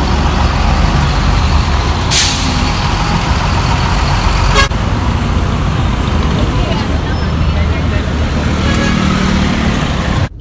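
Heavy city road traffic with buses running close by, a steady low engine rumble, and one short hiss of a bus's air brakes about two seconds in.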